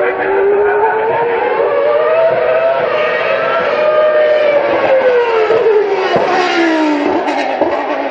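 Racing car engine running at speed, its pitch rising slowly through the first half and falling away through the second half.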